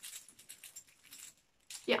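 A cheap gold-coloured handbag chain rattling in the hand, its links clinking together in a quick run of small clicks that stops about a second and a half in. The sound is the sign of a very cheaply made chain.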